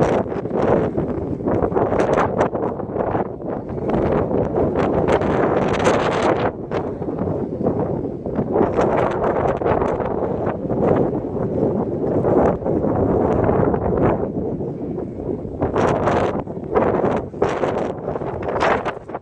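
Wind buffeting the microphone, a loud rumbling rush that swells and eases in gusts.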